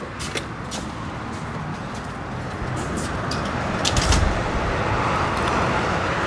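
Outdoor road-traffic noise, a steady rushing hiss that grows gradually louder, with a few light clicks of footsteps on pavement and a brief low bump about four seconds in.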